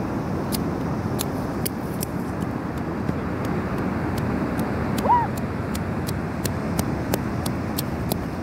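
Steady roar of ocean surf breaking on the beach, with a brief rising squeal about five seconds in.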